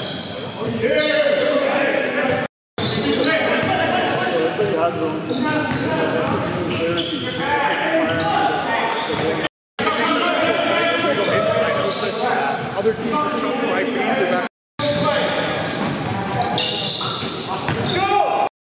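Live basketball game sound in a reverberant gymnasium: a ball bouncing on the hardwood court under indistinct players' voices. The sound drops out suddenly for a moment three times, at edit cuts.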